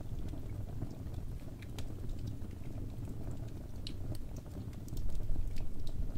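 Wood fire burning in a fireplace: a low steady rumble of flames with scattered sharp crackles and pops, growing a little louder about five seconds in.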